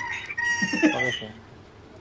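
A rooster crowing: a long, high call that falls slightly in pitch and trails off about a second in.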